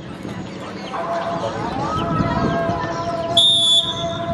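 A referee's whistle blown once, a short shrill blast of about half a second near the end, the signal for the penalty taker to kick. Behind it, outdoor crowd chatter and a drawn-out higher call.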